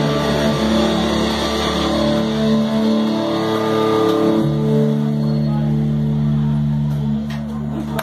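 Live rock band, with electric guitars, bass and drums, playing loud through amplifiers. Long chords are held and ring out, with one change about halfway through, in the closing bars of the song. The sound eases off near the end.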